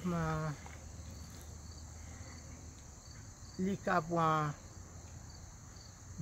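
Steady high chirring of crickets, faint and continuous, with a man's voice drawing out a word at the start and a few words about four seconds in.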